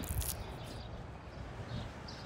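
A hand rubs seasoning into a raw fish fillet on a wooden board, a short scratchy rubbing right at the start. Then comes a steady low outdoor background with small bird chirps every half second or so.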